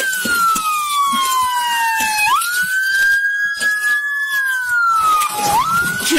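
Police siren wailing: a high tone holds, slides slowly down over a second or two, then snaps quickly back up, twice.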